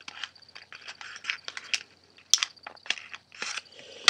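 Thin origami paper crinkling in short, irregular crackles as a folded paper waterbomb is worked from inside with a wooden knitting needle to pop out its edges, with a louder rustle at the very end.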